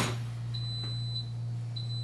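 A kitchen appliance beeping its done alert: long, even, high-pitched beeps, one about half a second in and another starting near the end, signalling that the rice has finished cooking. A steady low hum runs underneath.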